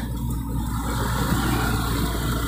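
Pickup truck engine running steadily while driving slowly, heard from inside the cab, with road noise.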